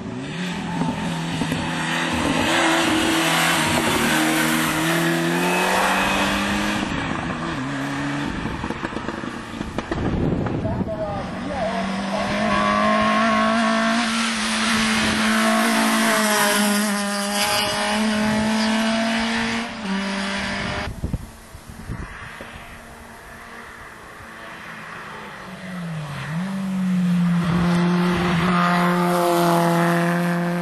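Racing touring car engines at full throttle, working up through the gears with a step in pitch at each shift. There are three loud runs, with a quieter lull about two-thirds of the way in.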